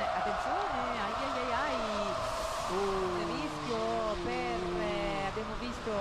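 Mostly commentators talking, over steady race-car noise from the track broadcast.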